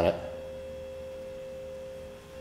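A steady tone held at one even pitch. It carries on unchanged after a word that ends at the very start.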